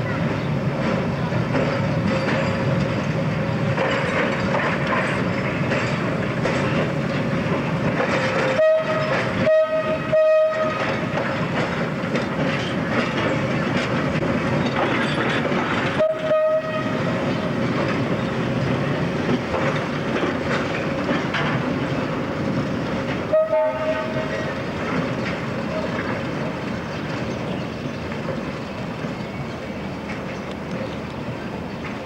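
Electric interurban train running with a steady rumble and hum, sounding short horn toots: three close together about nine seconds in, then single toots at about sixteen and twenty-three seconds.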